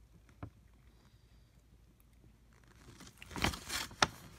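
Quiet room tone with a faint click about half a second in, then a brief rustle near the end as a paper instruction sheet is handled.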